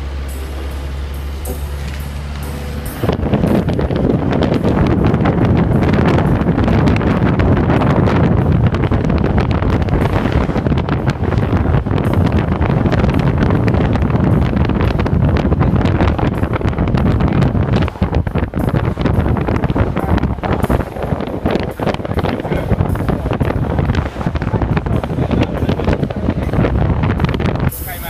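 Steady low engine drone of an old ambulance heard from inside its cab. About three seconds in it gives way to loud wind buffeting on the microphone mixed with engine and road noise from the moving vehicle, which continues unevenly.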